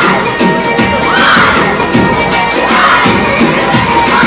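A group of voices shouting and cheering together, two long calls about a second and a half apart, over Punjabi bhangra music with a steady drum beat.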